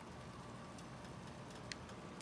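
Faint, steady bubbling of beet stems simmering in a saucepan of water on an electric stove, with one light click near the end.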